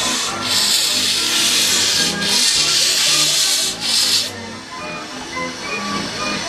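Small saddle-tank steam locomotive starting away with its cylinder drain cocks open, loud hissing blasts of steam in three long bursts that stop about four seconds in.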